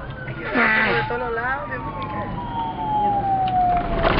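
A siren winding down, its wail falling slowly and steadily in pitch over about three seconds. A brief burst of voices about half a second in is the loudest moment.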